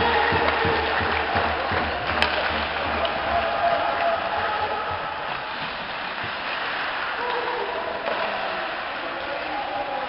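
Live ice hockey rink ambience: a steady wash of crowd noise and voices, with one sharp crack about two seconds in.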